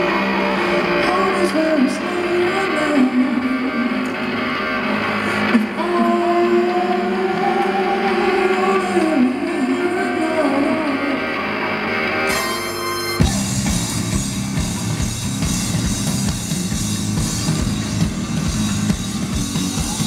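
Live band music over a festival PA, recorded from the crowd: long melody lines that slide in pitch over electric bass. About 13 seconds in, a heavy, even bass-and-drum beat comes in.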